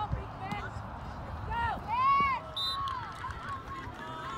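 Players and sideline spectators shouting and yelling during a flag football play. Several short calls are heard, the loudest a drawn-out yell about two seconds in, over a low steady rumble.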